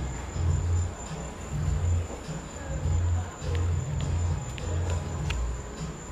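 Crickets trilling in one steady high-pitched tone over the irregular low bass notes of distant music.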